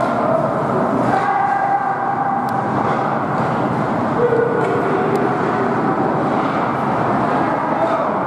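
Ice hockey rink din during play: a steady blend of voices and skating noise, with a couple of held shouts and a few sharp clacks.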